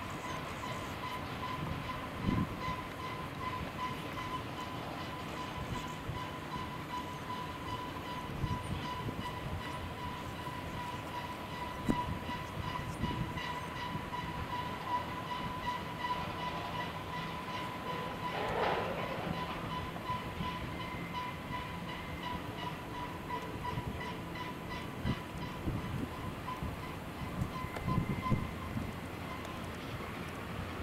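Long double-stack freight train moving slowly through curves, with a steady high-pitched squeal typical of wheel flanges grinding on curved rail. Occasional low thumps are heard, and a brief louder noisy burst comes about two-thirds of the way in.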